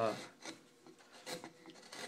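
Hand-pushed carving gouge paring into wood: a few short, dry scraping cuts as chips are lifted.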